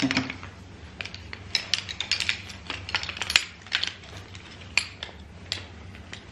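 Poles of a shock-corded, ultralight pack-away camping chair frame clicking and clacking as they are pulled apart and folded together: a run of irregular sharp clicks, several a second.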